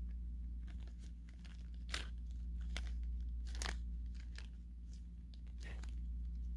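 Faint handling noises from a small toy crossbow being turned and fiddled with in the hands: a few light, scattered clicks and rustles over a low steady hum.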